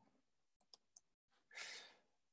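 Near silence, with two faint computer keyboard key clicks a little under a second in, then a short soft breath near the end.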